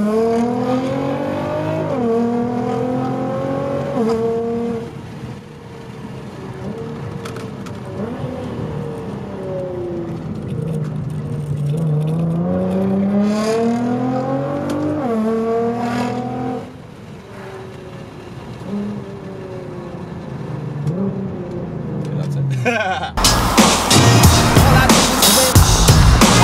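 Nissan GT-R's twin-turbo V6 heard from inside the cabin, pulling hard in two bursts of acceleration: the engine note climbs and drops back sharply at each upshift, with quieter cruising in between. Loud music cuts in near the end.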